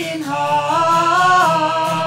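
Slow worship song sung, the voice holding long notes that step up and then back down.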